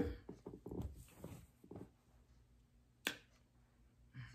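A quiet room with faint traces of a voice, then a single sharp click about three seconds in.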